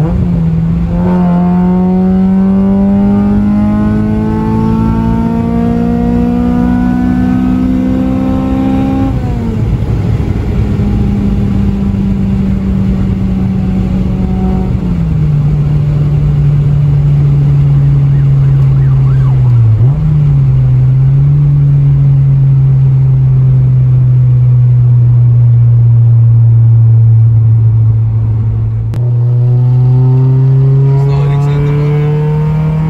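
Honda Civic Type R EP3's four-cylinder engine heard from inside the cabin on the highway, with a loud drone: the revs climb steadily for about nine seconds, fall sharply, fall again about fifteen seconds in, then hold a steady cruising note. The revs jump up again about a second before the end, over road and tyre noise.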